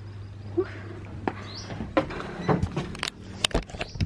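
A bungalow door being handled and opened: a string of sharp clicks and knocks through the second half, over a steady low hum that stops about two seconds in.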